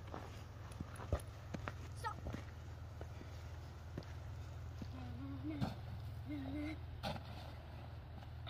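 Faint children's voices calling out twice around the middle, with scattered crunching clicks over a steady low hum.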